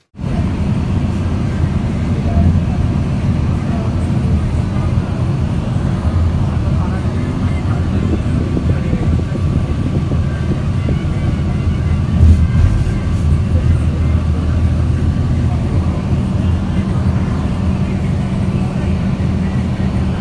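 Steady low engine and road rumble heard from inside a moving road vehicle.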